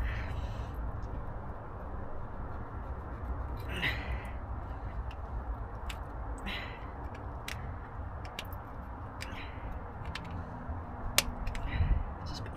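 Small clicks and rubbing as a rubber spark plug boot on an HT lead is pushed and worked down onto a spark plug, over a steady low rumble.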